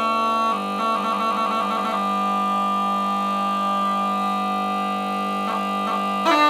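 Kozioł wielki, the Polish great bagpipe, playing a traditional folk tune with a steady, continuous reedy tone. A quick ornamented run comes about a second in, then the chanter holds one long note for most of the rest.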